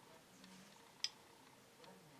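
Near silence broken by one small sharp click about a second in, and a fainter one near the end, as glass beads and a beading needle are handled.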